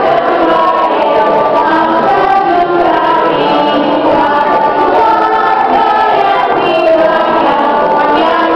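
A group of young children singing a Russian song together.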